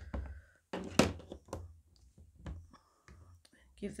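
Ink pad dabbed onto a clear stamp on a Stamparatus hinged plate: a few sharp taps, the loudest about a second in, over low handling rumble.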